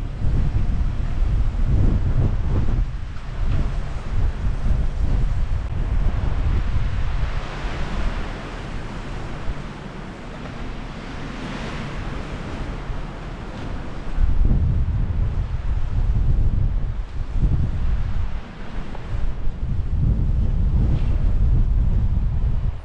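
Strong, gusty wind buffeting the microphone despite its windscreen, a low rough rumble that eases for a few seconds in the middle and comes back hard about two-thirds of the way through.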